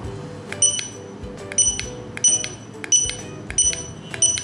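Opticon OPR-2001 handheld barcode scanner giving five short high-pitched good-read beeps, roughly one every 0.7 s, each with a click at its start. The beeps confirm that it is decoding both the normal black-on-white barcode and the white-on-black negative barcode now that both reading modes are enabled.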